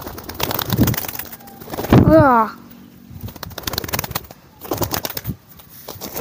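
Racing pigeon's wings flapping in clattering bursts as it is handled, with a short falling vocal call about two seconds in.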